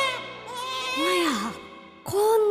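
A quavering animal bleat trailing off, then a brief soft vocal sound about a second in that rises and falls in pitch, over quiet background music.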